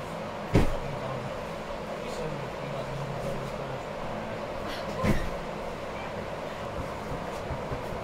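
Steady background hum of a large indoor climbing hall, broken by two sharp thumps, the louder about half a second in and another about five seconds in.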